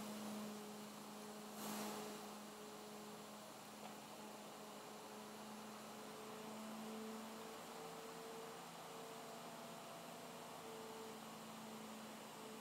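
Faint, steady electrical hum with a thin hiss underneath: the background noise of the narration recording while no one speaks.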